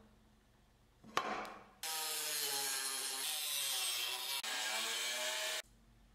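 Angle grinder with a cut-off wheel cutting through the steel body of a circular saw blade: a loud, harsh whine whose pitch sags and recovers as the wheel loads. It starts suddenly about two seconds in and cuts off abruptly near the end, after a short knock about a second in.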